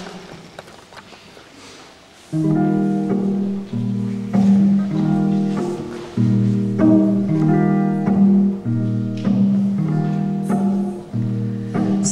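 Acoustic guitar playing a song's intro: chords struck about once a second and left to ring, starting a couple of seconds in after a quiet lead-in.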